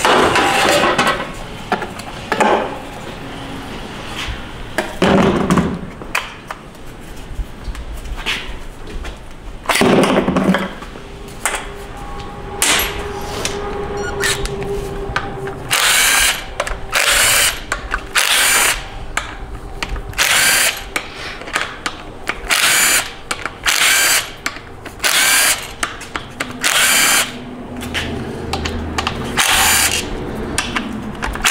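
Cordless power driver spinning out the valve body bolts of a 6R80 six-speed automatic transmission in short bursts, about one a second through the second half. A few loud knocks of metal parts being handled come in the first half.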